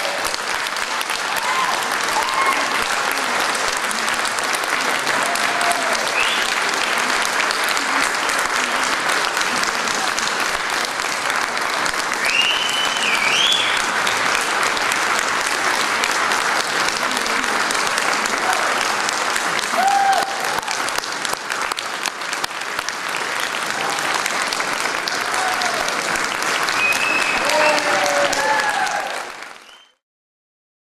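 Audience applauding steadily, with a few brief voices calling out over the clapping, fading out near the end.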